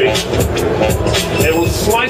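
Looped electronic music with a steady drum beat, playing back from Steinberg's LoopMash loop player in Cubase 5, with a man's voice partly over it.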